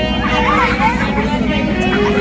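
Several voices calling out and chattering over background music that plays throughout.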